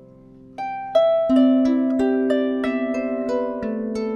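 Marini Made 28-string bass lap harp being plucked, heard through its installed pickup. Fading notes give way about half a second in to a melody of single plucked notes over ringing low bass notes.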